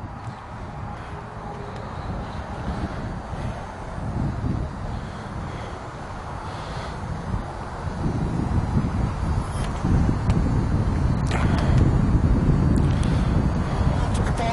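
Wind rumbling on the microphone, uneven and growing louder about eight seconds in, with a few faint clicks near the end.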